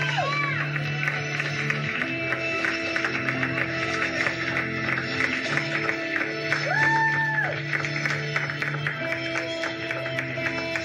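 Live rock band playing: electric guitar and held chords over drums with steady cymbal. A pitch slides up and back down near the start and again about seven seconds in. Recorded on a small camcorder microphone.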